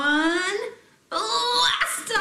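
A woman's voice calling out the last beats of a rocket-launch countdown in long, drawn-out tones: the first rising in pitch, the second starting about a second in, louder and held.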